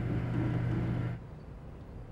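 A steady, low mechanical hum that fades out about a second in.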